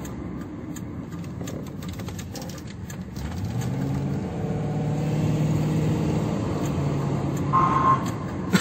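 Car engine heard from inside the cabin over tyre and road noise. About three seconds in, the engine speeds up as the car accelerates: its note rises and then holds steady at a higher, louder pitch. A short high tone sounds near the end.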